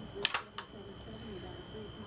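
Three quick sharp clicks a quarter to half a second in, from a soap loaf and gloved hands knocking against a wooden multi-wire soap cutter, over faint background talk and a steady high whine.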